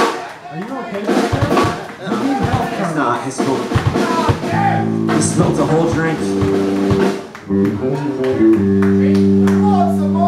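Live punk rock band playing through a bar PA, with a pounding drum kit and distorted electric guitars and bass. Halfway through, the drumming thins out and the guitars hold ringing chords, and a loud sustained chord rings out near the end, like a song winding down.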